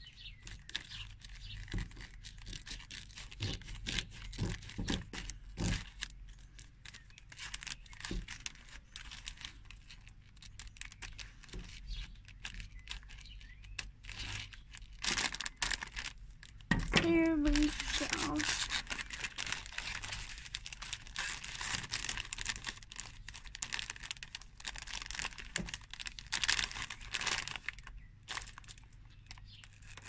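Thin plastic polybag crinkling and crackling as scissors cut along it and hands handle and pull at it. The crackling gets denser and louder in the second half.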